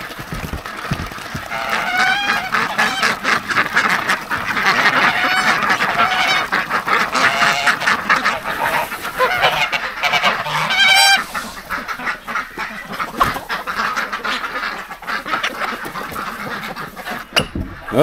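A flock of domestic geese and ducks calling together: a constant din of overlapping honks and quacks, thinning out somewhat in the last third.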